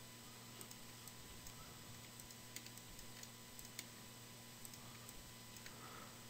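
Near silence, with faint, irregularly spaced clicks from a computer mouse and keyboard over a faint steady hum.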